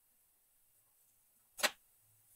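Near silence, then a single sharp wooden click about one and a half seconds in, as a thin plywood piece is knocked into place against a routed plywood template.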